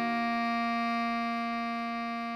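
Bass clarinet holding one long note, the written C5 of the melody, steady with a slight fade toward the end.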